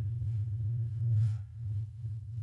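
A steady low hum, with a faint brief hiss about a second in.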